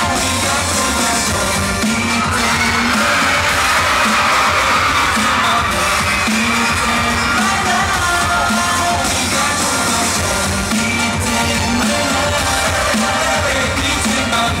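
K-pop boy band singing live into handheld microphones over a loud pop backing track, heard from within the audience. Fans' screams swell over the music a couple of seconds in.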